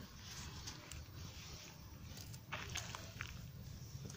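Faint rustling of rue foliage as hands pull and break off tender sprigs, with a few small snaps and clicks, several of them together about two and a half seconds in.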